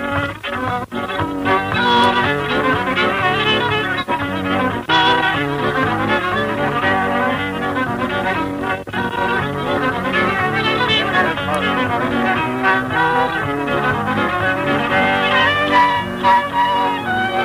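An old-time fiddle tune in the key of G, played briskly with quick, running notes. The sound is dull and thin, like an old home tape recording. Someone laughs about six seconds in.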